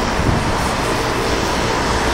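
Road traffic on a city street: a steady rush of passing vehicles' engines and tyres, with a faint engine hum through most of it.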